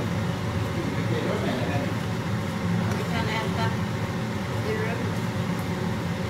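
A steady low hum, with a voice talking faintly in the background.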